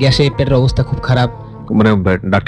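Talk-show speech over a background music bed with steady held notes; the speech pauses briefly after about a second and a half.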